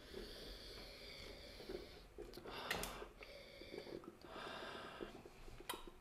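Faint, drawn-out sniffs: a few long inhalations, each about a second or two, as the aroma of dry jasmine green tea leaves is breathed in from a glass.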